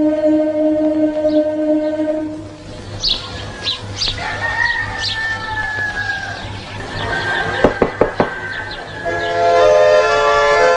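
A choir's held chord dies away, then village-yard sounds follow: a rooster crowing and birds chirping in short falling calls, and four sharp knocks near the end. About a second before the end, accordion-led folk dance music starts.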